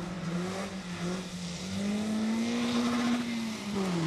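BMW 3 Series Compact rally car engine pulling past under power. Its note climbs about halfway through, holds, then drops away near the end.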